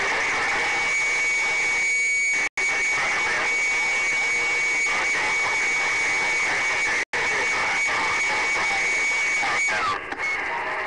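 CB radio receiver tuned to a crowded skip channel: a steady high-pitched heterodyne whistle over a hash of static and overlapping garbled signals, with the signal meter reading strong. The audio cuts out briefly twice.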